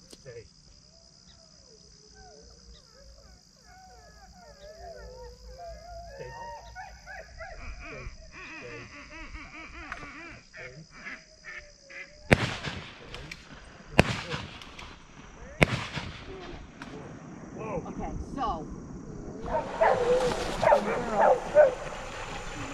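A hunting dog whining eagerly, then three gunshots about a second and a half apart, the loudest sounds, followed by a jumble of voices.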